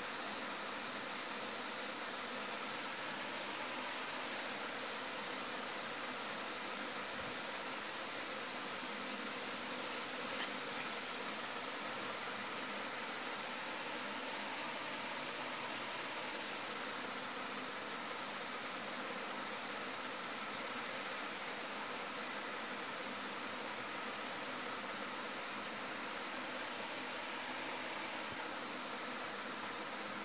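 Steady, even hiss of room background noise, with one faint click about ten seconds in.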